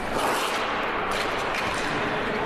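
Figure skate blades scraping and carving on the ice in a run of rough, hissing strokes as the skater goes into a jump and falls.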